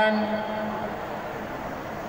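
A pause in a man's amplified speech, leaving steady background noise of a large hall with a low, even hum running under it.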